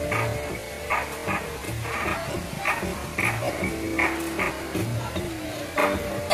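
Background music with a regular beat and held melodic tones.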